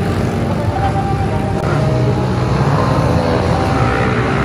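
Several small single-cylinder four-stroke pit bike engines running around a dirt track, their pitch rising and falling as the throttles open and close.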